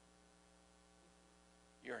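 Near silence in a pause of speech, holding only a faint, steady electrical hum. A man's voice begins just at the end.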